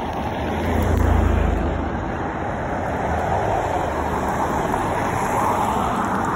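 Road traffic on a city street: cars driving past, a steady rush of tyre and engine noise. A low rumble is loudest about a second in, and the noise swells again near the end as another car goes by.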